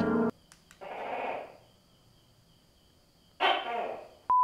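Tokay gecko calling: a faint call about a second in, then a louder one near the end.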